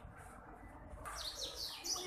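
A bird chirping: a quick run of short, high, falling chirps starting about a second in, over a low steady background hum.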